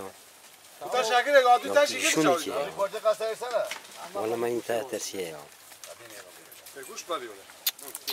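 People talking in a few short phrases, mostly in the first half, then quieter from about five seconds in.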